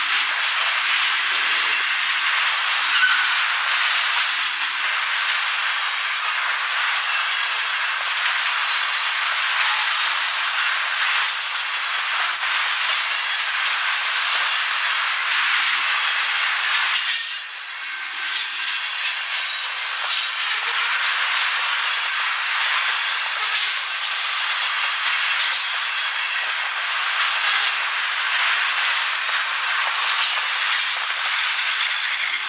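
Loaded railroad tank cars of a long freight train rolling steadily past close by: the continuous hiss and rolling noise of steel wheels on the rail, with a few sharp clicks and clanks. The noise dips briefly a little past halfway.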